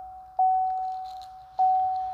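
Chevrolet Cruze dashboard warning chime sounding as the ignition is switched on: one clear single-pitch note struck twice, a little over a second apart, each note fading away.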